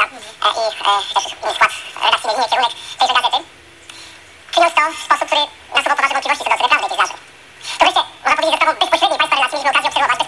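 Speech: a voice talking in short phrases, with two pauses of about a second.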